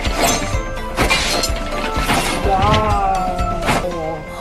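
Anime fight soundtrack: dramatic music with several sharp impacts and a shattering crash, and a drawn-out voice about three seconds in.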